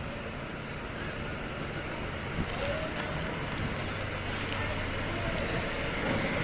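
Steady hum of distant road traffic, with a few faint clicks near the middle.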